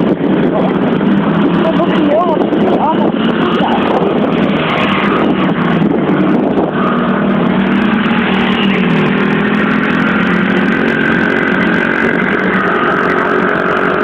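Pit bike's small engine running at a steady speed, its even note coming through clearly from about halfway in, over a rushing noise.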